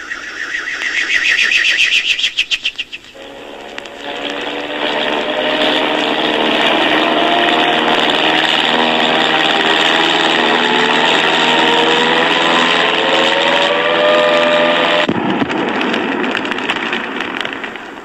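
Comic sound effects from the recording: a fast-pulsing whirr that rises for about three seconds as the boomerang is thrown, then a long, loud engine-like roar with slowly rising whining tones over a steady hum, which cuts off suddenly about fifteen seconds in and fades away.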